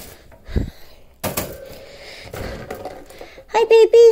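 Wire pet cage being handled: a dull knock and then a sharp metallic click from the cage, followed near the end by a high, warbling voice.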